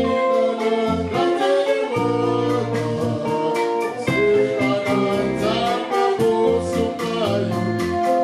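Live band music: men singing over electric guitar and a drum kit, with a steady beat.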